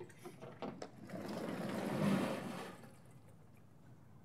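Sliding chalkboard panel being pushed up in its frame: a few light knocks, then a rumbling slide that swells and dies away over about two seconds.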